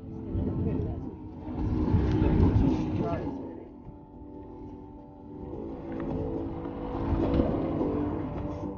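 Low rumbling outdoor background noise that swells and fades, with indistinct distant voices.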